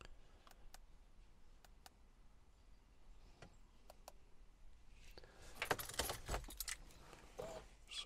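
Faint, scattered clicks of buttons being pressed on a handheld diagnostic scan tool, then a couple of seconds of rattling, clinking handling noise starting about five seconds in.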